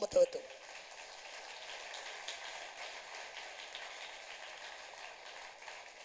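A steady, even hiss with a faint high hum running through it, left after a man's voice stops at the very start.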